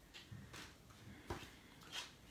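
Faint rustling and soft taps of cardstock cards being handled and set down on a tabletop, with a few light knocks, the sharpest a little over a second in.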